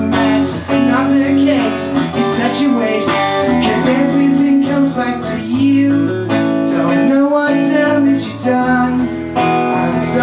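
A guitar strummed through an instrumental passage of a live song, loud and steady.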